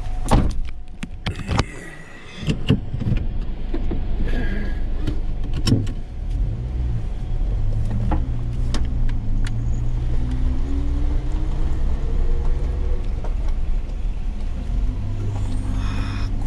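Inside the cabin of a Suzuki Jimny JB64 driving slowly on a rough gravel road: the 658 cc turbocharged three-cylinder engine's low drone, with sharp knocks and rattles from the tyres and body over the surface in the first several seconds. Later the engine note climbs as the car pulls harder.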